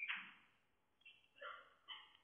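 Near silence, broken by a faint short sound at the start and two faint, brief pitched sounds in the second half.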